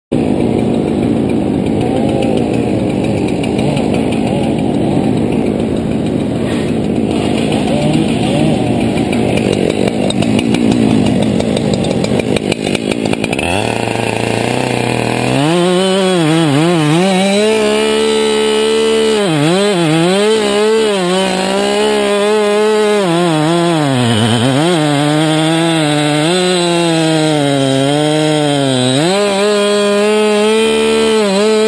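Two-stroke chainsaw cutting through a tulip poplar trunk. For the first dozen seconds it makes a rough, noisy sound. From about fifteen seconds in the engine note is clear and high, and its pitch sags and recovers several times as the saw loads down in the cut.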